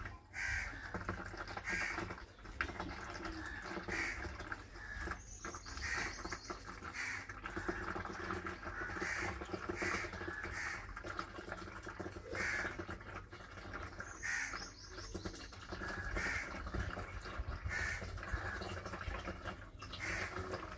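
Birds calling in short, repeated calls, about one a second, over a low steady background rumble.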